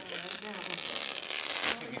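Duct tape being pulled off the roll in one long steady rip that stops abruptly near the end, with faint voices underneath.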